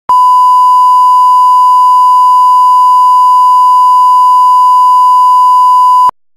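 Loud, steady 1 kHz line-up tone, the reference beep that accompanies television colour bars, held as one unbroken pure note.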